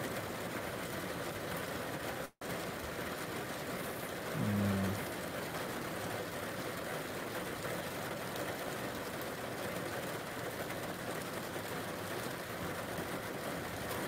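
Steady hiss of heavy rain in a thunderstorm. There is a brief low hum from a man's voice about four and a half seconds in, and the audio drops out for a moment a little over two seconds in.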